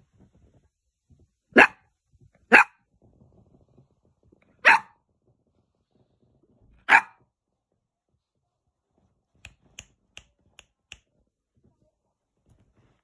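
Eight-week-old spaniel puppy barking: four short, sharp barks spaced over about five seconds, then a few faint clicks near the end.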